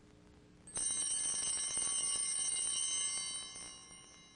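A set of altar bells shaken, a bright jingle of many high tones. It starts sharply about a second in, holds for about two and a half seconds and fades away near the end. It is rung at the priest's communion.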